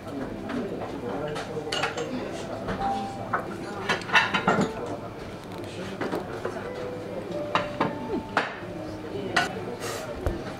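Chopsticks and small ceramic dishes clinking and tapping now and then over a low murmur of restaurant voices.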